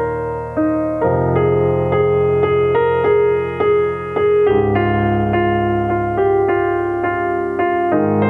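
Grand piano playing a slow, flowing piece: a melody of single notes over sustained bass notes that change every few seconds.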